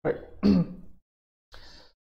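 A man clearing his throat once, about a second long, with a sudden start.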